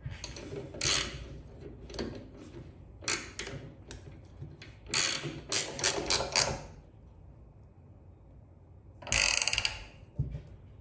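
Ratcheting combination wrench clicking in short bursts as it turns the nut holding a sharpening wheel on its arbor, with a quick run of clicks near the end.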